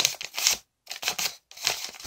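A sheet of origami paper rustling and crinkling in the hands as it is folded and creased, in a few short bursts with brief pauses between.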